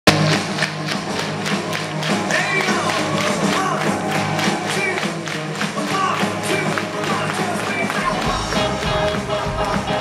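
Live rock'n'roll band playing: drum kit, upright bass, electric guitar and piano under vocals, with a steady quick beat. The bass end fills out near the end.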